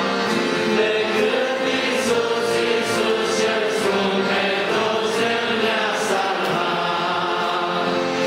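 A congregation singing a hymn together, many voices holding long notes in unison.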